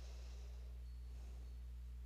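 A steady low hum, with faint rustling of curly kale leaves being torn from their stems by hand at the start and about a second in.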